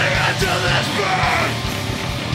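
Hardcore punk band playing live: distorted electric guitars, bass and drums, with the vocalist screaming into the microphone until about a second and a half in, after which the band plays on without the voice.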